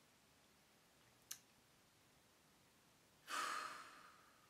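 Near silence, then near the end a woman sighs: one breathy exhale lasting under a second that fades out. A single faint click about a second in.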